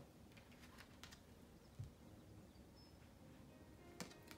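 Near silence with a few faint clicks and a soft thump from a deck of oracle cards being handled and a card drawn.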